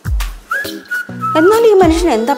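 Background score with a high, whistle-like melody that steps down in pitch over low bass notes, followed near the end by a lower, wavering pitched line.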